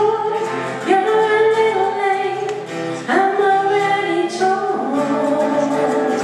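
Live acoustic band: two acoustic guitars strummed under singing voices holding long notes, with strong strums about a second in and again about three seconds in.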